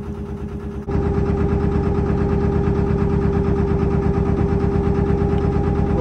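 Narrowboat engine running steadily at cruising speed with an even beat. About a second in it suddenly gets louder, with a strong steady hum.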